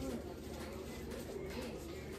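The tail of a drawn-out "oh" from a voice right at the start, then quiet room noise with faint murmurs.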